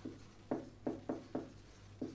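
Marker pen writing on a whiteboard: four short strokes, starting about half a second in and following each other quickly.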